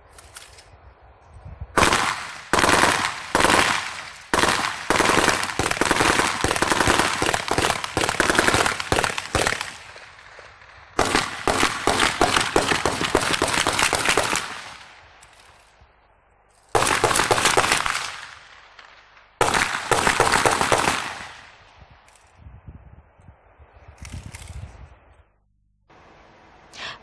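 Automatic rifle fire in a night firefight: a long run of rapid shots starting about two seconds in, a second long burst after a short break, then two shorter bursts and a few fainter shots near the end.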